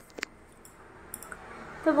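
Stainless steel dishes clinking sharply a few times as they are handled in a sink, the loudest clink just after the start, over a faint steady hiss. A woman starts talking at the very end.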